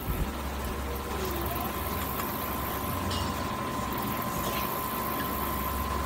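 A steady low mechanical hum, with a thin, steady high tone held above it.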